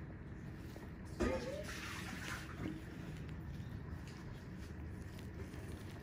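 A person's brief vocal sound about a second in, starting suddenly and fading over about a second, over steady low background noise.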